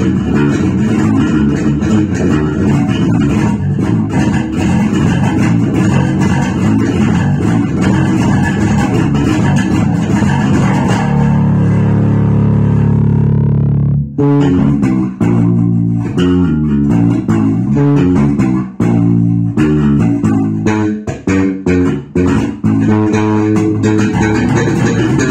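Electric bass guitar played solo with the fingers: busy, dense chordal playing, then a strummed chord left to ring for about three seconds. Short, choppy notes with brief gaps follow.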